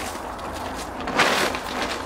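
Vinyl tarp door flap of a canopy shed rustling as it is lifted overhead, with a brief louder swish a little over a second in.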